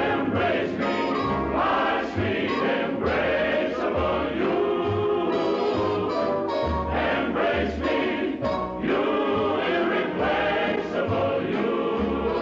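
Musical number from a film soundtrack: a chorus singing to band accompaniment, with a bass line moving steadily underneath.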